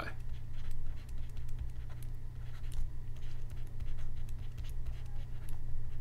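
Stylus scratching and tapping on a pen tablet while writing by hand, heard as faint short ticks over a steady low hum.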